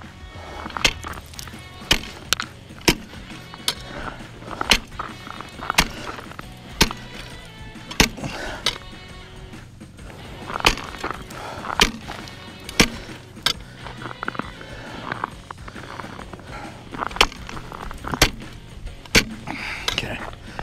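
A pole struck down on thin first ice about once a second, each strike a sharp knock, as the ice is tested ahead while walking out on it. Background music plays underneath.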